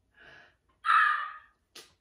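A woman's excited gasp about a second in, preceded by a softer breath, with a brief sharp sniff-like sound just after it.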